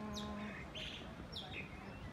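Small birds chirping: several brief, high chirps that fall in pitch, scattered through the moment.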